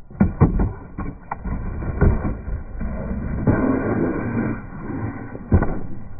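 A skateboard slam on concrete: the board smacks down and clatters, with several sharp knocks in the first second and more over the next second. Another hard knock comes near the end.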